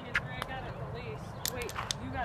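A mini-golf ball is struck with a putter, giving a sharp click just after the start. About a second and a half in comes a quick cluster of clicks as the ball runs into loose gravel.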